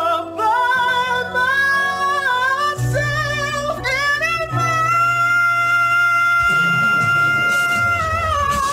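Male singer in soprano range, singing quick vocal runs and then holding one long, steady high note in head voice from about halfway through, over sustained low accompaniment notes.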